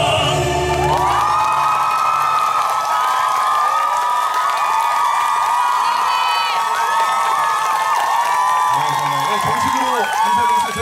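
A male vocal quartet's last held note ends within the first second. An audience then cheers loudly, with many high-pitched voices. A man's voice starts speaking near the end.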